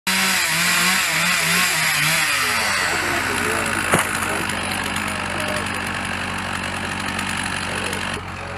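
Stihl two-stroke chainsaw cutting, its engine pitch wavering up and down under load for the first few seconds, then running steadier. A single sharp knock about four seconds in.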